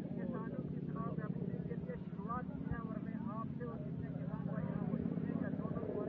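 Indistinct chatter of several people talking at a distance, over a steady low mechanical hum.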